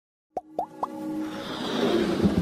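Animated logo intro sting: three quick plops, each sweeping upward in pitch, about a quarter second apart, then a swelling music riser that grows louder.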